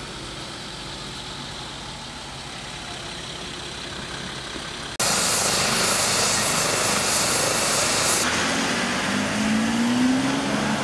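Moderate steady outdoor noise with a faint vehicle engine running, then, about halfway in, a sudden jump to a loud medical helicopter running on the ground, its turbine and rotor noise carrying a thin high whine. Near the end this gives way to a vehicle engine rising in pitch as it pulls away.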